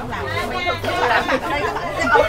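People talking, with a babble of other voices behind them.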